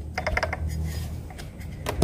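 Quick run of small light clicks and rattles from the metal parts of a Suzuki Address V100's drive pulley being handled and fitted behind the drive belt, with one sharper click near the end. A low steady hum sits underneath.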